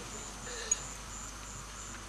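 An insect chirping faintly in a high, evenly pulsed call, about three chirps a second, over low room tone in a pause of the talk. There is one short tick a little under a second in.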